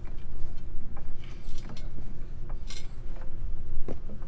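A few light, scattered metallic clinks and taps over a steady low hum.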